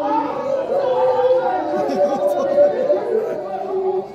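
Several voices of Tibetan lhamo opera performers at once, partly spoken and partly chanted, with some notes held for about a second.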